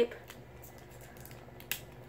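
Clear sticky tape being handled and torn off a roll: faint rustling and clicks, then one short sharp tear near the end.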